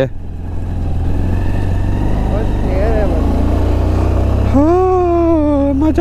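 A 125 cc motorcycle is being ridden at low speed, with its engine giving a steady low rumble. From about four and a half seconds in, a person's voice holds a long, drawn-out, gliding note over it.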